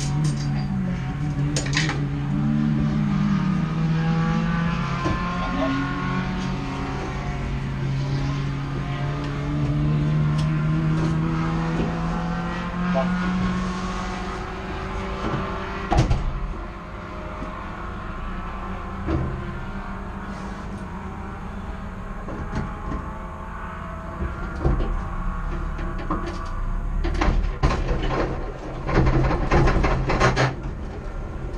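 Race car engine idling, heard from inside the stripped cockpit, its pitch rising and falling briefly in the first few seconds as the revs change. A single sharp thump comes about halfway, and a run of clicks and knocks near the end.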